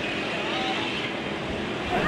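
Steady background noise of city street traffic, with faint voices in the distance.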